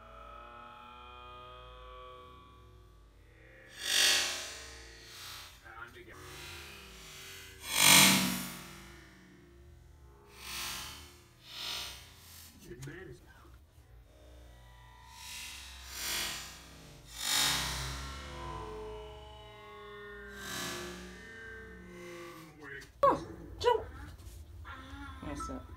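Slowed-down audio of a slow-motion recording of a paper ball being thrown: deep, drawn-out, warped sounds that are terrifying, with several loud swells, the loudest about eight seconds in.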